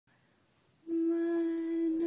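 A voice humming one long, steady note that begins about a second in, opening the soundtrack music.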